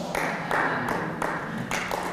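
A quick, irregular run of sharp percussive strikes, about five in two seconds.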